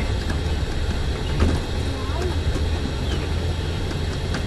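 Steady low rumble of a bus engine and tyres heard from inside the moving bus, with a brief knock about a second and a half in. Faint voices murmur underneath.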